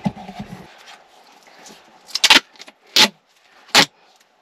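Gorilla Tape being pulled off the roll in three short, sharp rips, a little past halfway and near the end, the first one the longest.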